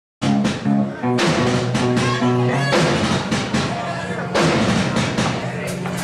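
Live rock band playing loud through a club PA: electric guitar and drum kit with cymbal hits, starting abruptly a fraction of a second in.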